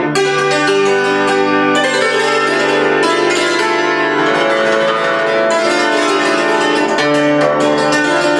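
Concert cimbalom played with short bare wooden sticks in traditional Ukrainian tsymbaly style: quick runs of struck strings that ring on under each other, giving a very metallic sound.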